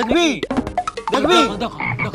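A man's loud, wordless vocal cries, the pitch swooping sharply up and down in short arcs.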